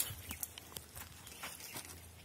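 Light scuffs, crunches and clicks on dry, stony ground, a few a second, as a filled jute sack is grabbed and shifted and feet move beside it.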